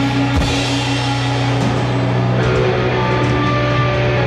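A rock band playing loudly: amplified electric guitar holding sustained chords over a strong low note, with drums, and a sharp drum or cymbal hit about half a second in.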